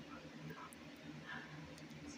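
Quiet background with a low hum and faint, indistinct voice sounds.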